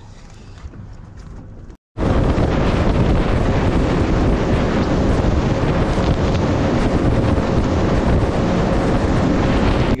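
Boat running fast through the sea: water and spray rushing along the hull, with heavy wind buffeting the microphone and a faint steady hum. The sound cuts in abruptly about two seconds in, after a brief dropout, and holds steady and loud from there.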